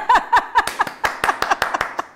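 Hands clapping rapidly, several claps a second, with a burst of laughter in the first second.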